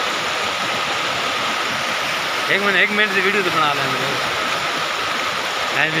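Fast mountain stream rushing over rocks: a steady, even rush of white water.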